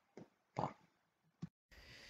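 A single short spoken word, 'pa', with a faint click before it and another just before the sound cuts off abruptly to dead silence.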